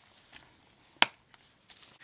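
A single sharp click about a second in as a binder's strap snap is pressed shut, with faint handling rustle around it.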